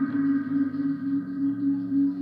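Music: the instrumental intro of a hip-hop song, a steady held keyboard chord with no beat.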